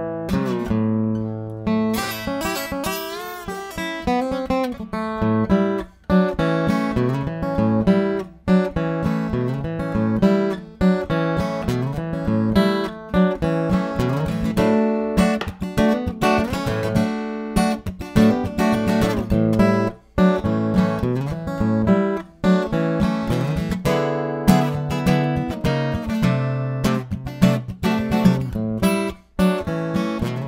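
Acoustic steel-string guitar in open A tuning played bottleneck-style with a slide: picked and strummed blues figures with notes that glide up and down in pitch.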